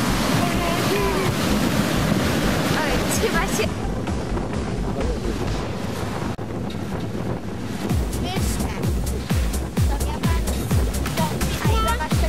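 Strong wind on the microphone with surf breaking against a concrete breakwater. About four seconds in the sound cuts to quieter outdoor ambience, and about eight seconds in music with a steady beat of about two strokes a second comes in.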